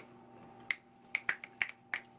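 Fingers snapping, about half a dozen sharp snaps in a quick, uneven run, most of them in the second half.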